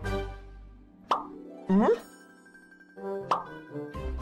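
Cartoon-style plop sound effects over light music: short pitched blips that rise in pitch, one at the start, one about a second in, another just before two seconds and one more past three seconds.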